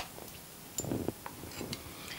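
Quiet kitchen utensil sounds while cornstarch is being spooned out with a measuring spoon: one sharp click near the start, then a soft short clatter about a second in and a small tick just after.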